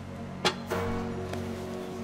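Background drama score: a low held drone, with a new sustained note coming in about 0.7 s in. Just before that note, a single sharp click is heard.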